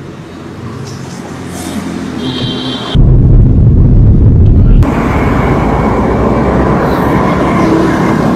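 Car engine and road noise as the car sets off and drives. A quieter steady hum runs for about three seconds, then comes a loud low rumble for about two seconds, then steady driving noise.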